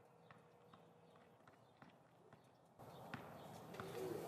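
Near silence with faint, evenly spaced ticks about two to three a second; the background rises about three seconds in.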